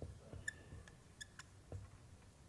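Marker writing on an easel whiteboard: a few short, faint squeaks as the tip drags through the letter strokes, with soft taps in between.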